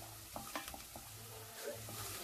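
Wooden spatula stirring carrots frying in oil in a stainless steel pot: a faint sizzle with a few light knocks and scrapes of the spatula against the pot.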